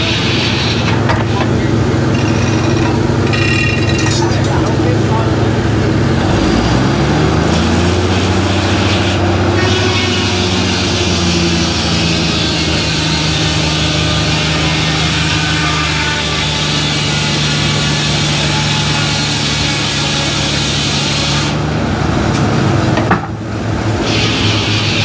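Sawmill running with a steady low drone from its drive while a log on the carriage is fed through the saw. About six seconds in, the drive's pitch sags and then recovers as the saw takes the cut.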